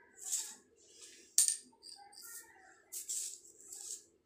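Pencil marking a sheet of A4 paper on a hard floor in three short strokes, with a sharp tap about a second and a half in.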